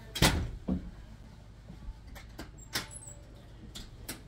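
Sliding glass door being worked: a loud knock about a quarter second in and a smaller one just after, then a few light clicks.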